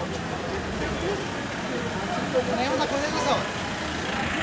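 Busy street at night: people talking nearby over the steady low rumble of car engines in slow traffic.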